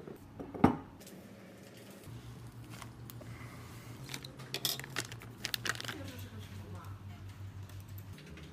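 A hard knock about half a second in as a glass vase is set down on the desk, then the crinkling and tearing of a plastic instant noodle packet and its seasoning sachet, with sharp crackling rustles clustered near the middle.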